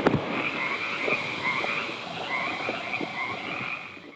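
A chorus of frogs calling steadily, fading out at the very end.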